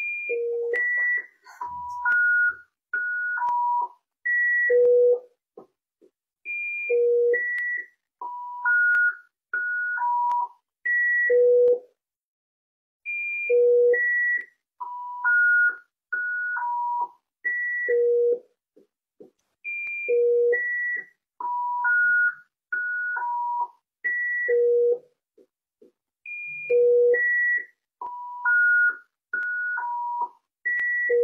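Rife frequency machine playing a sequence of pure electronic tones, each about half a second long, hopping between low and high pitches. The run of tones repeats about every six and a half seconds; the speaker calls this sequence the opening frequency.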